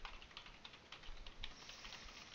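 Computer keyboard being typed on, a quick run of faint keystrokes as an email address is entered.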